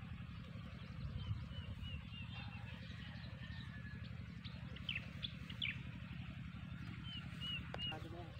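Small birds chirping: a quick run of short high chirps about a second in, a few sharp calls around five seconds in, and three more chirps near the end, all faint over a low steady rumble.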